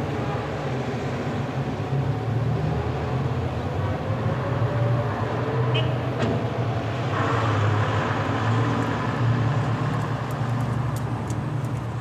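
Car engine and road noise, steady, as heard from inside a moving car. It begins suddenly.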